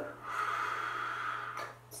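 A person sniffing: one long inhale through the nose, about a second long, smelling the face mask on their hands.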